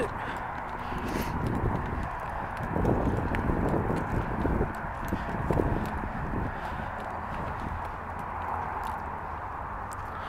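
Footsteps of a person walking across dry, dead grass, irregular soft thuds over a steady background hiss.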